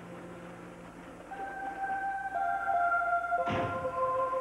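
Background score of sustained, organ-like held chords that shift and grow louder in the second half, with a single dull thump about three and a half seconds in.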